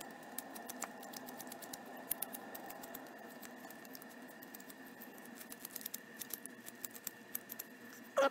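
Flexcut detail knife paring small shavings from a basswood block: a run of light, irregular clicks and scrapes as the blade bites into the soft wood, thickest around two to three seconds in and again near the end.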